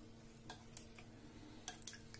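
Steel spoon stirring flattened rice (poha) in water in a glass bowl, faint, with a few scattered light clicks as the spoon touches the bowl.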